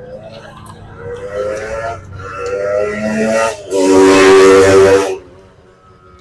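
A man's drawn-out, wordless vocal sounds: a few rising tones, then a loud, breathy held note lasting about a second and a half near the middle, which stops suddenly.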